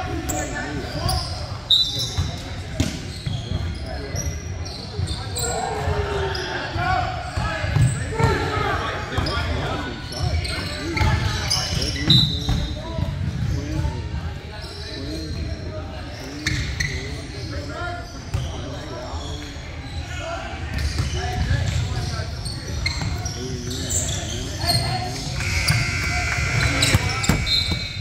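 Basketball bouncing and thudding on a hardwood gym floor, with scattered voices of players and spectators echoing in a large hall and a few brief high squeaks.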